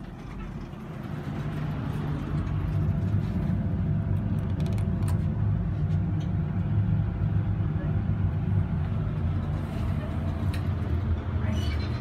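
1970 Oliver & Williams hydraulic elevator in motion, heard from inside the cab: a steady low hum from the pump motor, building up over the first two seconds as the car starts and then holding even.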